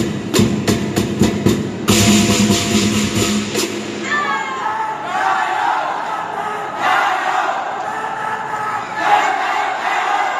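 Lion dance percussion, drum and crashing cymbals, beaten in quick even strikes, stops about four seconds in. A crowd then cheers and shouts.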